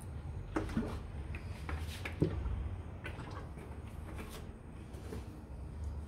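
Cooking oil poured into an empty aluminium pot on a gas stove. It is faint, over a steady low hum, with a few light clicks and knocks in the first couple of seconds.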